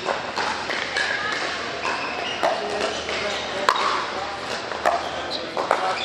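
Pickleball paddles hitting a plastic ball: several sharp pops at uneven intervals, the loudest just past halfway, over a background of voices in a large indoor hall.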